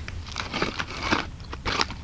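Crunchy dried apple rings being chewed close to the microphone: a run of short, dry crunches.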